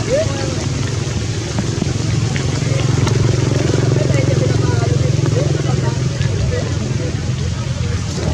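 A steady low engine drone, swelling slightly in the middle, over an even hiss of rain, with faint voices.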